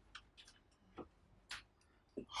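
Near silence broken by three faint ticks of a marker pen on a whiteboard during writing.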